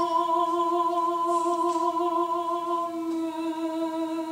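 A male solo singer holds one long sustained note with a slight vibrato, the closing note of the song, easing off slightly near the end.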